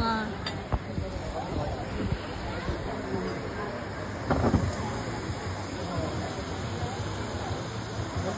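Murmur of people talking in the background over a steady rush of water from a small rock waterfall, with one brief louder voice a little past four seconds in.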